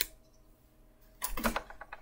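Near silence, then about a second in a quick run of light clicks and taps as paper oracle cards are gathered and handled on a tabletop.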